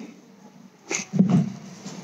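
Handling noise from a handheld microphone being moved against a microphone stand's clip: a click about a second in, then short low rubbing and bumping noises.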